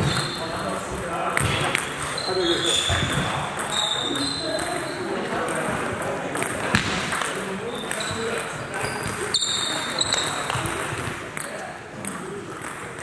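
Table tennis rally: the ball clicking off bats and table at irregular intervals, with a few short high squeaks, over background voices in a sports hall.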